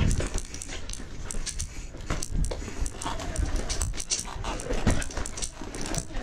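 Specialized S-Works Levo e-mountain bike clattering and rattling over rocky trail, with sharp knocks throughout and low thumps from the wheels. Heavy, dog-like panting breaths come through the rattle, loudest about 3 and 5 seconds in.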